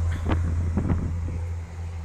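Wind rumbling on the phone's microphone, a steady low rumble, with a couple of faint clicks from the phone being handled.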